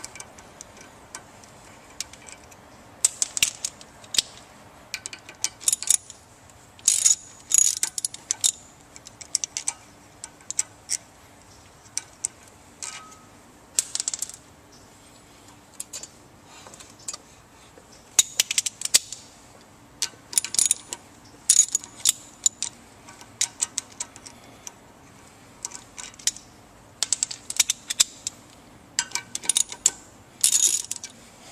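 Socket ratchet clicking in short, irregular bursts as it backs out the bolts of a pump's shaft coupling.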